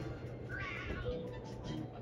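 Cartoon soundtrack playing through a TV speaker: background music with a short, high, meow-like call about half a second in, followed by a held tone.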